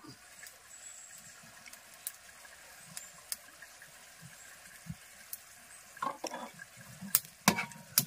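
Puliyinchi (tamarind-ginger curry) simmering quietly in a steel pot, a faint steady bubbling hiss, with a few light clicks and taps as a spoon and a small container are handled.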